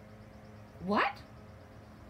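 A woman exclaiming "What?!" once in a squeaky character voice, her pitch sliding sharply upward through the word.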